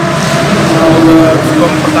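A motor vehicle passing close by on the road, its noise swelling to a peak about a second in, over a steady hum.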